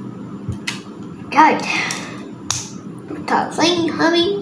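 Plastic Lego bricks clicking sharply twice as pieces are handled and pressed together, with a child's wordless vocal sounds sliding in pitch in between.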